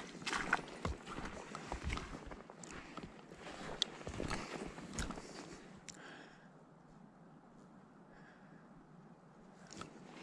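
Irregular close-up crunching and rustling from a person moving about on a sandy lakeshore with a plastic food bag, dying down after about six seconds.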